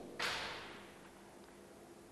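A short, soft swish of noise close to the lapel microphone about a quarter second in, fading away within about a second.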